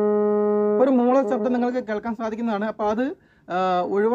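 A man's voice, humming or singing: one held note, then a short melodic phrase, a brief pause and more, heard through a homemade horn-speaker megaphone as it is first tested.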